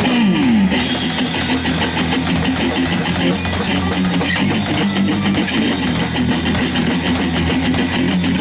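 Live rock band playing: electric guitar and bass over a full drum kit, with a note sliding down in pitch just after the start.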